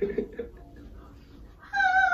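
A moment of laughter at the start, then near the end a high-pitched voice starts a long, steady held note.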